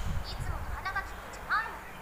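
Speech only: a young woman's voice from the anime's Japanese dialogue, speaking a few short phrases.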